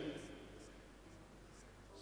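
Near silence: a pause in a man's amplified speech, with faint room tone and a steady low hum. His last word fades out in the first moment.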